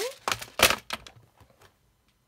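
Clear plastic compartment box of metal eyelets set down on a cutting mat: a few sharp clattering knocks, the loudest about two-thirds of a second in, followed by some lighter clicks.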